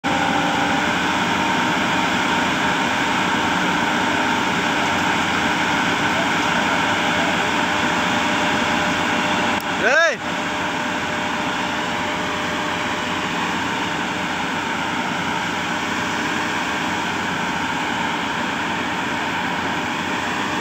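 Heavy diesel machinery, an excavator and a mobile crane, running steadily under load while holding up a plant structure. A short shout cuts through about halfway.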